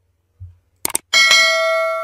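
Subscribe-button animation sound effect: a quick double mouse click about a second in, then a bright notification-bell ding that rings on and slowly fades.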